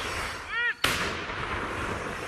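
A tracked self-propelled howitzer firing a single round: one sharp blast about a second in, followed by a long rolling echo that fades slowly.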